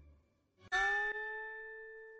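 A single bell-like chime sound effect struck about two-thirds of a second in, with a brief click half a second later, ringing and fading away over about two seconds. It marks the break between two episodes of the audiobook.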